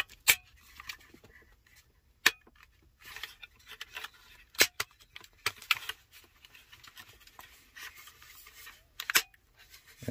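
Plastic centre-console trim panel of a BMW E70 X5 being pressed and snapped into its clips: about five sharp plastic clicks spread through, with plastic rubbing and scraping between them.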